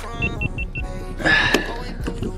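Four quick, evenly spaced high electronic beeps, followed about a second and a half in by a louder, fuller burst of sound.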